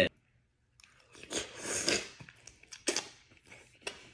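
A person chewing a cooked mussel close to the microphone, starting about a second in, with a few short sharp clicks.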